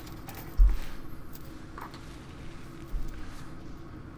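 Two deep thuds from a heavy punching bag, a loud one just over half a second in and a softer one near three seconds, over a low steady hum.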